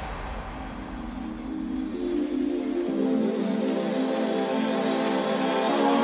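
Breakdown of a bass house track: drums and bass have dropped out, and sustained synth chords build up in layers, getting gradually louder, with a faint high flickering tone above them.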